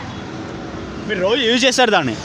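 Steady road-traffic hum, with a person's voice speaking over it from about a second in.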